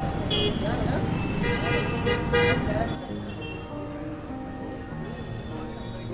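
Busy street: crowd chatter and traffic with vehicle horns honking, loudest in the first three seconds, over background music.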